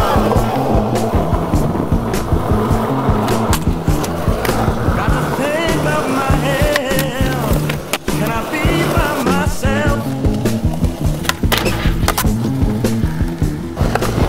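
Skateboard wheels rolling on concrete, with several sharp clacks of the board popping and landing, under a music soundtrack with a steady beat.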